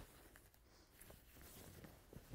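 Near silence, with a few faint soft rustles of cotton fabric being unfolded.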